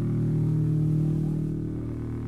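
Distorted electric guitar and bass holding one sustained, droning chord through the stage amplifiers, steady and without drum hits.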